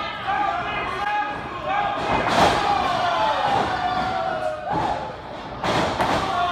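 Two sharp impacts in a wrestling ring, a loud one about two seconds in and another near the end, with voices shouting in the hall throughout.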